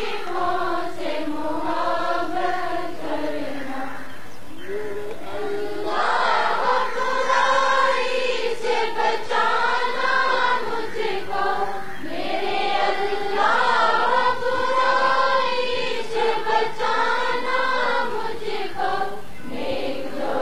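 A choir singing a slow melody in unison, in long sustained phrases, with a brief lull about four to five seconds in before it swells again.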